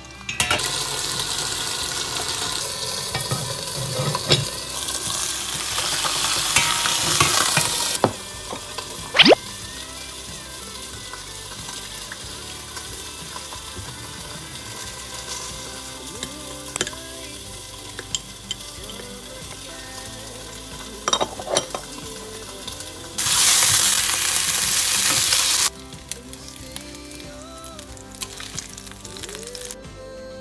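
Hot oil sizzling loudly in a frying pan under a perforated metal splatter guard as fish fries. The sizzle eases after the first several seconds and flares up again near the end. A few sharp clinks of a spoon against a small ceramic bowl come in the middle.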